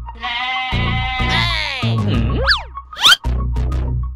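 Background music with a low, steady beat, and a long, wavering comic sound effect laid over it for the first two seconds or so. It is followed by two quick rising whistle-like glides.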